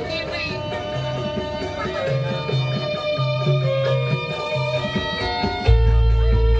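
Music played over a large sound system: a plucked, guitar-like melody over a stepping bass line. Near the end a much louder deep bass comes in.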